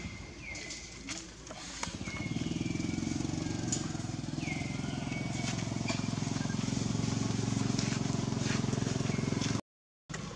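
A steady low engine-like hum that comes in about two seconds in and runs evenly, with a few short high calls over it; the sound cuts off suddenly just before the end.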